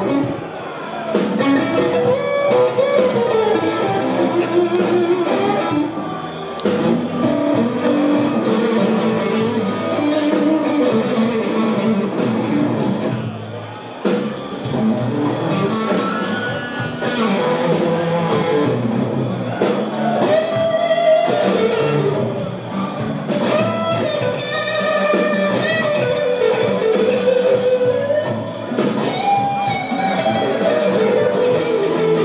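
Live blues band playing an instrumental passage of a blues in E: electric guitar lead lines bending over electric bass and drums.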